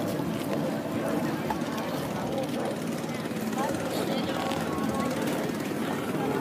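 A boat engine running steadily, a dense low drone with a fast throb, while people talk in the background.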